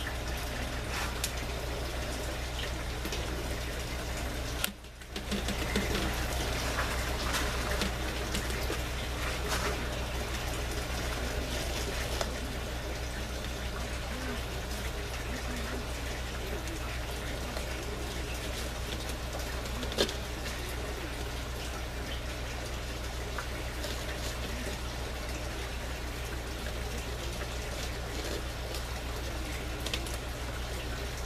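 Water trickling and splashing steadily down inside a PVC aquaponics grow tower, under a steady low hum. The sound cuts out briefly about five seconds in, and there is one sharp click about twenty seconds in.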